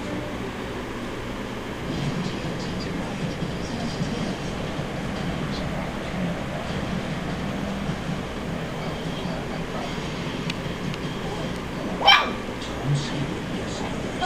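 A small dog lets out one short, sharp, high squeak near the end, over a steady low background hum. It is the dog's habitual squeaky vocalisation, which its owner calls a horrible squeak.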